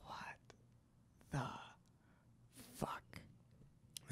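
A person's soft, breathy whispered sounds: three short ones about a second and a half apart, with no clear words.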